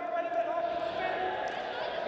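Voices calling out over a steady tone, with light thuds of wrestlers' feet and bodies on the mat during standing hand-fighting.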